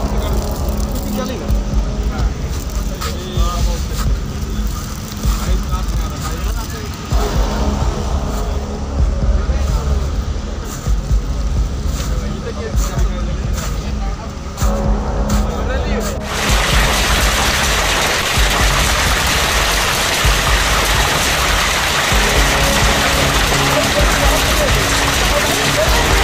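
A hailstorm filmed on a phone: a low rumble with scattered knocks. About two-thirds of the way through, it cuts suddenly to a steady, dense hiss of hail and rain pouring down.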